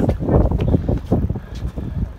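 Wind buffeting a phone's microphone in irregular low rumbling gusts.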